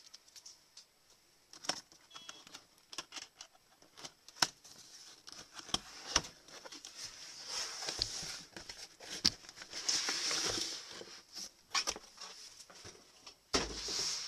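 Cardboard product box being opened and handled by hand: scattered taps and scrapes, a longer sliding, rustling stretch midway, and a bump near the end.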